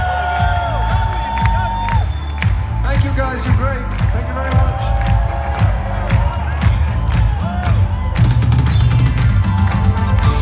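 A live rock band playing loud over a concert PA, with a steady heavy drum beat and cymbals thickening near the end. Crowd cheering and whooping over it, heard from among the audience.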